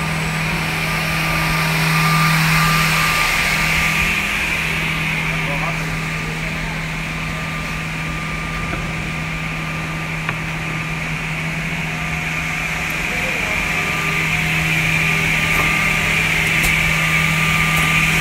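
Automatic edge banding machine running steadily as a panel passes through, a constant low motor hum under a higher whine from its cutter and trimming units; it runs very smoothly.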